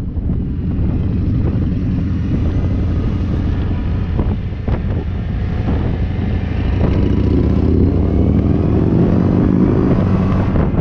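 Motorcycle engine running on the move, with wind noise on the microphone. Over the last few seconds the engine note rises steadily and grows louder as the bikes pick up speed.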